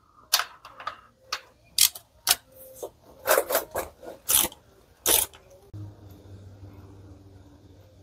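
Ratchet wrench with an 11 mm socket loosening a transmission drain plug: a run of sharp, uneven metal clicks and clinks over the first five seconds. A faint steady low hum follows.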